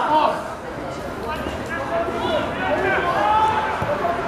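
Voices of players and spectators calling out and chattering across an outdoor football pitch during play; no single voice stands out.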